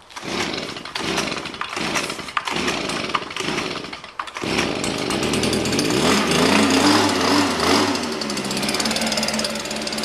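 Small engine of a Stihl leaf blower set up as a leaf vacuum being started: it sputters in uneven bursts for about four seconds, then catches and runs, revving up and back down before settling into a steady run.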